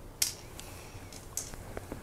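A few small sharp clicks and taps of hand-handled plastic model parts and a screwdriver. The loudest click comes just after the start, with fainter ones past halfway and near the end.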